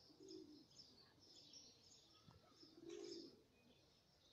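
Faint birdsong: small birds chirping throughout, with two low dove coos, one near the start and one about three seconds in. A single faint click comes a little after two seconds.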